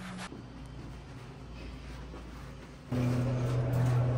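Faint, steady low room rumble, then about three seconds in a sudden switch to a louder, steady low hum inside an elevator car.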